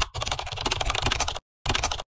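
Rapid run of even clicks like fast typing on a keyboard, an intro sound effect. It breaks off for a moment about one and a half seconds in, then resumes briefly and cuts off.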